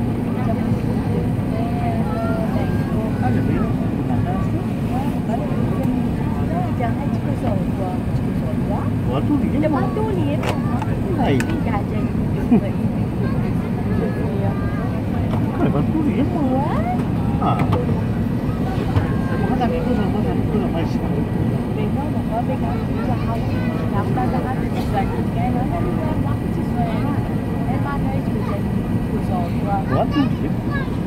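Steady cabin noise inside an Airbus A380 on descent: a constant low rumble of engines and airflow, with indistinct passenger voices over it.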